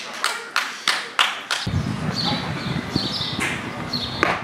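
Ballpark sound: several scattered sharp claps in the first second and a half. Then a low rumble sets in suddenly, like wind on the microphone, with a few faint high chirps over it.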